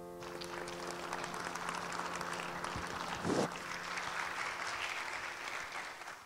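Audience applauding as a held final chord of music fades out, with a brief shout from one person about halfway through; the clapping dies away near the end.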